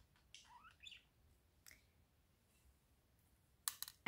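Near silence with a few faint bird chirps, short sliding calls in the first second and one more a little later. A couple of soft clicks come just before the end.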